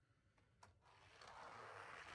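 Faint rushing scrape of a die-cast toy car's wheels rolling and sliding down a drift track, starting about halfway in after near silence and one small click.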